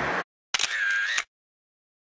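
Street background noise cuts off just after the start. About half a second in comes a brief camera-shutter sound effect, under a second long, with a short steady tone in it, and then dead silence.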